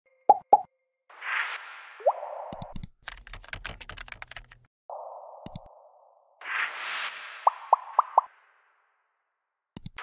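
Animated-interface sound effects: two quick pops, a whoosh with a rising pop, a run of keyboard-typing clicks, a single mouse-like click, then another whoosh with four quick pops and a final click.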